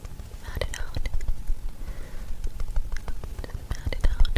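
Close-miked ASMR whispering with mouth clicks, over many soft low thumps from a makeup sponge dabbed against the cheek.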